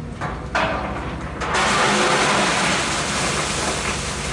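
A road vehicle driving past, its engine and tyre noise becoming suddenly louder about one and a half seconds in and staying loud.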